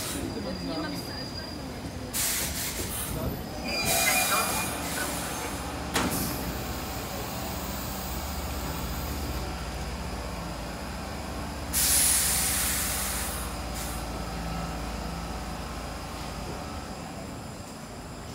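Stockholm metro C6 (Cx-series) train pulling in and braking to a stop at an underground platform: a low rumble of running gear with wheel squeal. A loud burst of air hiss comes about twelve seconds in, and an earlier hissing surge comes between two and four seconds in.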